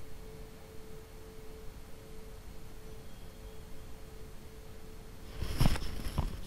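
A tuning fork ringing with a single steady pure tone that slowly fades out about five seconds in. Near the end comes a short stretch of rustling and tapping as tarot cards are handled.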